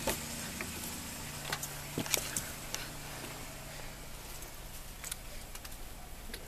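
A few light clicks and knocks, the loudest about two seconds in, as someone settles into a minivan's driver's seat with the camera in hand, over a steady low hum.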